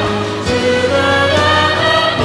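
A live worship band playing a song, with keyboard and electric guitar under singing voices. Sustained chords shift about half a second in and again near the end, over a steady bass.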